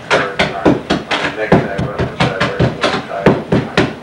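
Rapid, repeated sharp knocks of a tool breaking up a kitchen floor, about three to four blows a second, with voices talking underneath.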